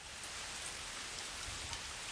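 Steady hiss of falling water with faint scattered drop ticks.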